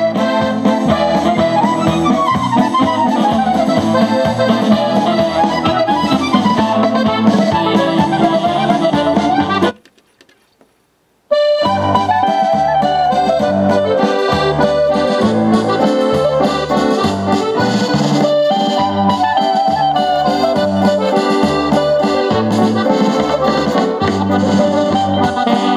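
Music from a CD playing on a Sony CMT-NEZ30 micro bookshelf stereo, heard through its speakers, with a steady pulsing bass line. About ten seconds in it cuts out for about a second and a half as the player skips from track 1 to track 4, then the new track starts.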